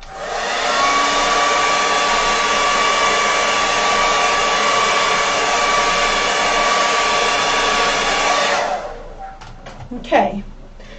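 Handheld hair dryer running, blowing on wet watercolour paint to dry it: a steady rush of air with a constant motor whine. It comes up to speed within the first second and winds down about nine seconds in.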